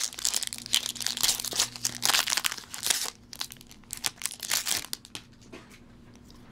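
A foil Pokémon booster pack is torn open and crinkled by hand. The crinkling is dense for about three seconds, then thins to a few scattered crackles as the wrapper is handled and the cards come out.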